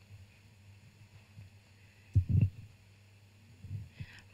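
Handling noise from a handheld microphone being passed from one presenter to another: a loud low thump about two seconds in and a smaller one near the end, over a faint steady low hum.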